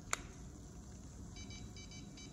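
A single sharp click, then faint electronic beeps from a handheld infrared thermometer. From about halfway through, the beeps come in quick pairs.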